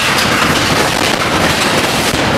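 Loud, harsh, continuous noise spread across both low and high pitches, holding a steady level.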